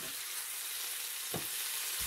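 Bacon sizzling in a hot non-stick frying pan, a steady hiss as a wooden spatula turns the rashers. There is one short knock about two-thirds of the way through.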